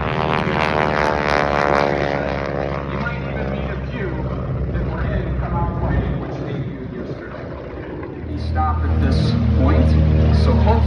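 Propeller aircraft flying a low pass, their engine drone falling in pitch as they go by over the first few seconds. A deeper, steady engine rumble builds near the end.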